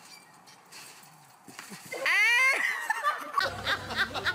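A person's high-pitched shriek, about two seconds in, rising sharply in pitch and then trailing off. Near the end, a man's rapid laughter over a low hum.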